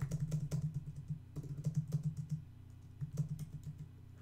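Typing on a computer keyboard: an irregular run of quick keystrokes, thinning out briefly a little past the middle, then resuming.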